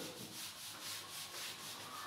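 A whiteboard eraser rubbing across a whiteboard in quick back-and-forth strokes, wiping off marker writing; faint.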